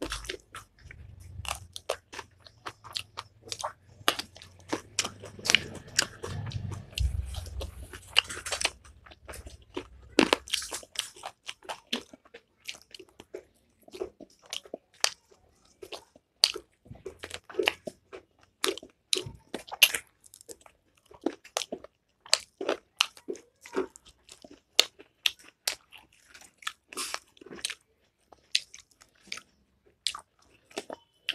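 Close-miked eating: crunchy bites and chewing with many irregular sharp mouth clicks, as rice and curry are eaten by hand along with a raw spring onion. A low rumble sits underneath for the first ten seconds or so.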